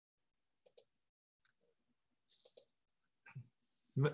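Near silence broken by about five short, faint clicks spread across a few seconds.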